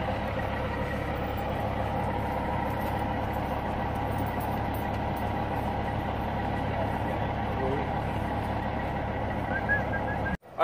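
Semi-truck diesel engine idling steadily, a constant low rumble.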